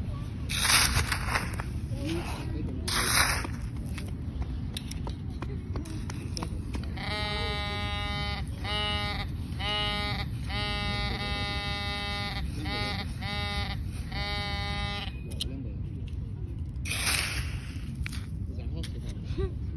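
Handheld metal-detecting pinpointer buzzing in a series of uneven pulses for about eight seconds in the middle, signalling metal in the dug soil. Near the start, two short scrapes of a digging scoop in gravelly sand.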